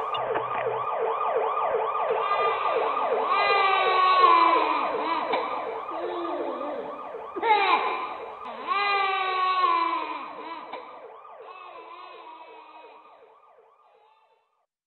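Several emergency-vehicle sirens sounding at once: fast yelping sweeps, with slower wails rising and falling over them. They fade out over the last few seconds.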